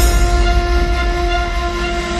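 Soundtrack music: a held, horn-like chord over a deep bass drone, struck just before and sustained without change.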